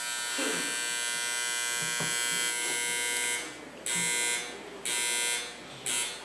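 An electric buzzer sounding: one long steady buzz of about three and a half seconds, then shorter buzzes of about half a second each, repeating roughly once a second.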